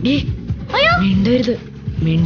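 Short wordless vocal sounds, a voice rising and falling in pitch in a few quick calls, over a low steady bed of background music.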